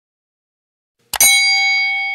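Notification-bell sound effect of a subscribe animation: about halfway through, a short click and then a bright bell ding that rings on and fades away.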